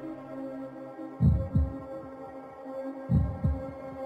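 Breakdown section of an electronic house track: held synth pad chords with no beat, broken twice by a pair of quick deep bass thumps, about a second in and again about three seconds in.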